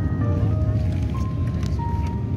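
Airliner cabin noise in flight: a steady low rumble of engines and airflow, with a melody of held notes over it.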